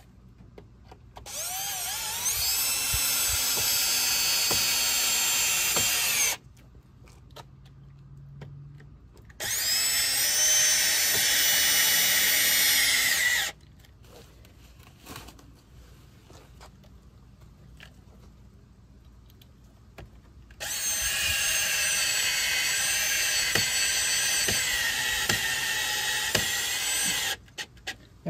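Porter-Cable 20V cordless drill/driver driving stainless steel wood screws through a stainless steel slide ski into wood, in three runs of several seconds each. Each run spins up with a rising whine, holds steady and stops suddenly as the screw seats.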